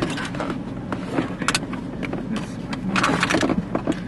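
Steady low rumble of a running vehicle heard from inside the cabin, with scattered sharp taps and knocks throughout.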